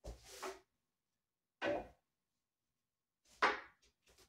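A wooden hook cane knocking against a wooden wing chun dummy three times, with the loudest knock near the end.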